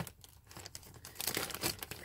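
Zip-top plastic bags crinkling and rustling as a hand sorts through them in a plastic storage drawer, starting with a single click and growing busier toward the end.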